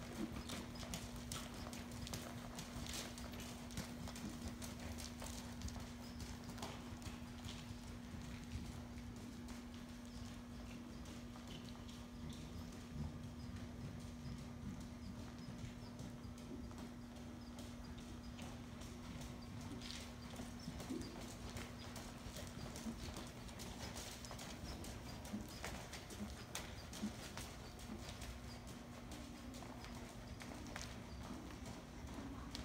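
Hoofbeats of a dressage horse trotting on indoor arena sand footing, soft irregular thuds that come and go as the horse circles, over a steady low hum.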